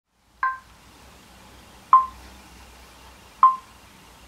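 Three short ringing pings, one clear note each, evenly spaced about a second and a half apart, each dying away quickly; the first carries a higher second note. A faint low hum runs underneath.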